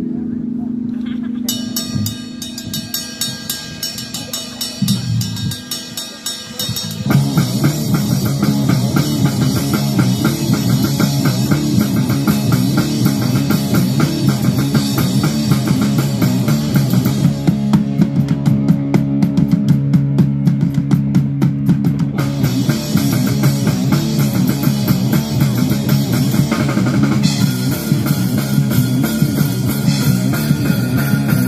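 Hardcore punk band playing live: it opens on a held low chord with fast, even strokes over it, then the full band comes in loud about seven seconds in, drums driving under distorted guitars.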